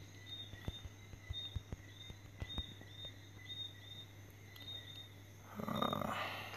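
Faint light taps of fingers typing on a phone's touchscreen keyboard, over a steady low hum and short high chirps that repeat about every half second. A louder, brief noise comes near the end.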